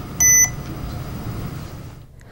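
GE MAC 5500 electrocardiograph giving a single short beep about a quarter second in as it is switched on with its power button.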